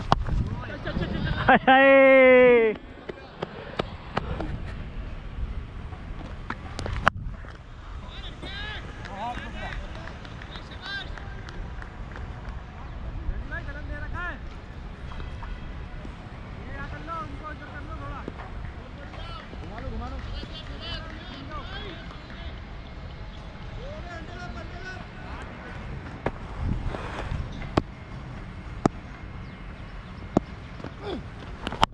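A loud, drawn-out shout about two seconds in, then faint voices of players calling across a cricket field, with low wind rumble on a helmet-mounted camera's microphone and a few sharp knocks.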